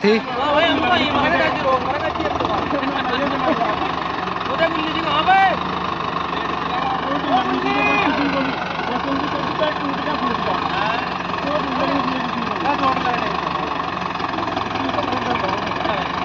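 Mahindra Arjun Novo tractor's diesel engine idling steadily, under the chatter of several men's voices.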